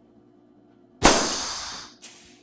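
A single gunshot about a second in, sudden and loud, its tail dying away over the next second.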